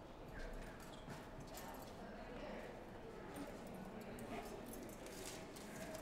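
Faint scattered rustles and light taps of a suitcase and long paper streamers being handled, with occasional footsteps on a wooden floor over low room noise.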